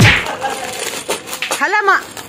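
A single sharp metallic clink with a short ring at the very start, then a voice briefly near the end.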